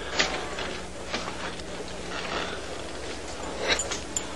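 Creaking of a wooden cross and rope under strain, with a few scattered sharp knocks: just after the start, about a second in, and near the end.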